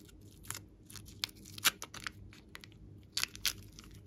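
Lavender glossy slime being squeezed and stretched in the hands, giving irregular sticky crackles and pops, the sharpest about one and a half seconds in.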